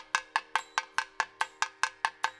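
Thavil, the barrel drum of South Indian temple music, played solo in a fast, steady rhythm of sharp, crisp strokes, about five a second, each with a short ring.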